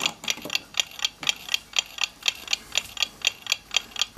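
A mechanical clock ticking steadily, about four ticks a second.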